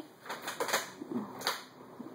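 A few light, irregular clicks and taps of small objects handled on a tabletop, with a brief faint vocal sound about a second in.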